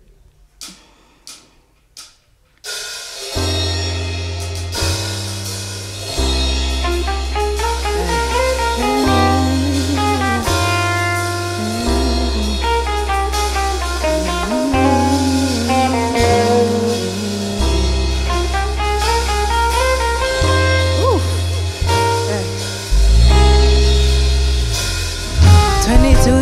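A few short sharp clicks, then about three seconds in a live band comes in with the instrumental intro of a song: electric bass holding long low notes under electric guitar, keys and drums.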